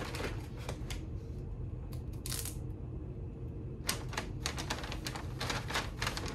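Brown kraft paper crackling and rustling in irregular bursts as it is folded and pressed around the edge of a small table, with a short longer crinkle about two seconds in and a busier run of crackles near the end.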